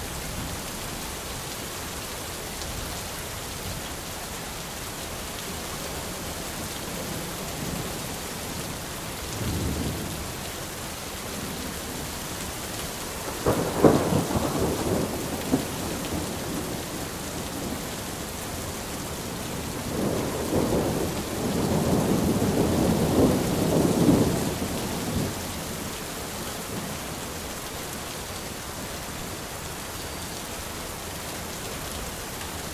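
Steady rain with three rolls of thunder: a faint one about a third of the way in, a sharper, louder one a little before halfway, and the longest, about five seconds of rumbling, in the second half.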